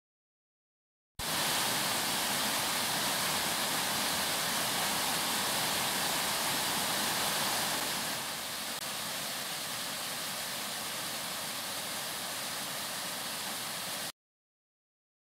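Waterfall cascading over rock ledges: a steady rush of falling water. It starts abruptly about a second in, becomes slightly quieter around eight seconds in, and cuts off suddenly at the end.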